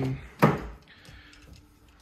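A single sharp click-knock about half a second in as the car door is opened, followed by a faint steady hum.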